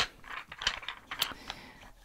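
A few scattered clicks and small knocks at irregular intervals: the stretcher bars of a cross-stitch project being handled and taken off.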